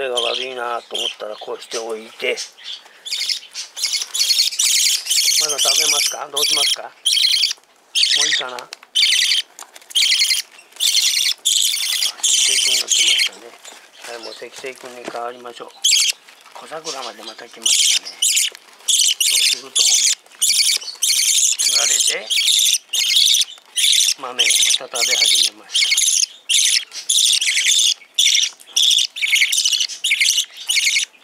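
Hand-fed pacific parrotlet and budgerigar chicks begging for food: rapid, raspy, high-pitched begging calls in quick runs with short breaks.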